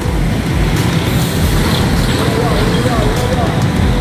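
Steady low outdoor rumble of background noise, with faint speech in the second half.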